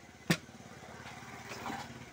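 A single sharp knock about a third of a second in, over the steady hum of a motor engine running nearby that grows a little louder.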